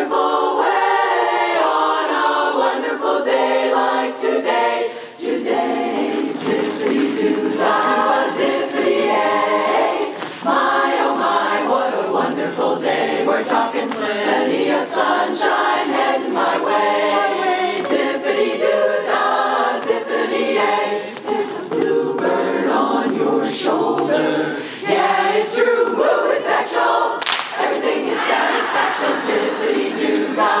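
Large women's chorus singing a cappella in close harmony, with short breaks between phrases about five and ten seconds in.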